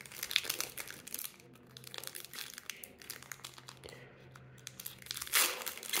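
Foil Pokémon booster pack wrapper crinkling as it is handled and opened, a soft run of many small crackles.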